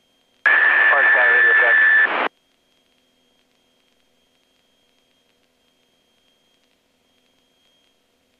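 A brief aviation radio transmission in the headset: about two seconds of clipped, narrow-band voice with a steady high whistle running through it, starting just under half a second in, then near silence.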